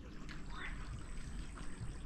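Faint steady trickle of water running into a garden pond, with a soft swish about half a second in.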